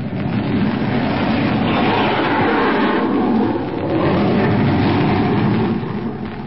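Radio-drama sound effect of a twin-engine plane's engines running loud and steady as it tries to speed away, easing slightly about three seconds in.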